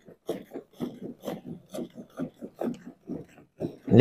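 Hand milking of a cow: streams of milk squirting into a bucket with each pull on the teats, in a steady rhythm of about three squirts a second.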